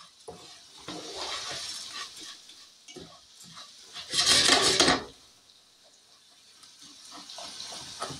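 A spoon stirring and scraping a dry rice-and-vermicelli mix as it browns in butter in a skillet, with scattered light clicks against the pan. About four seconds in comes one louder scraping burst lasting about a second.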